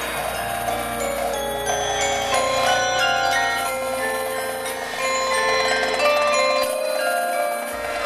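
Drum corps front ensemble playing metal mallet percussion: many overlapping bell-like notes ring on and blend into a shimmering chord. A low sustained drone underneath drops out for about a second near the end.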